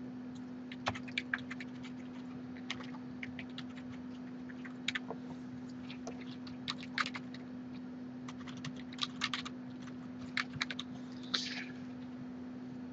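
Quiet, irregular keystrokes on a computer keyboard while code is typed and edited, over a faint steady hum.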